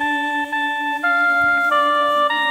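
Background music: an instrumental passage with a steady held low note under a slow melody of sustained notes that change about every half second.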